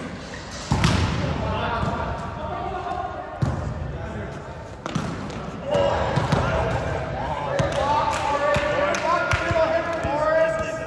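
Volleyball rally in a gym: a few sharp, echoing smacks of hands and forearms on the ball, the loudest about a second in, with players' voices calling out through the second half.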